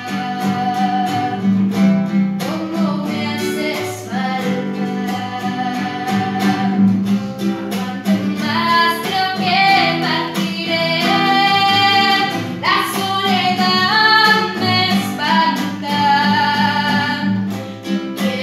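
A girl singing a ballad, accompanied by guitar. Her sung phrases grow fuller and higher in the second half.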